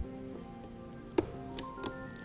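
Background music of held, changing notes, with one sharp click a little past a second in as the towing mirror's mount is handled.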